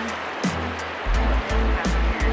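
Background music with a steady beat: deep bass thuds and a quick, regular tick.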